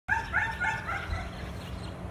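Black Labrador puppy giving a quick run of about five short, high-pitched yips in the first second.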